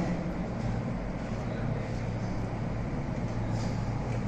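Steady background hum and room noise with no distinct events.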